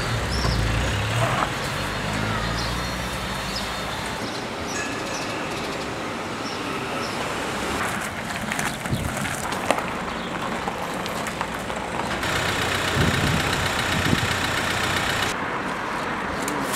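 City street ambience: a steady wash of road traffic, with a heavier low vehicle rumble in the first few seconds and scattered small clicks and knocks. The background changes abruptly a few times.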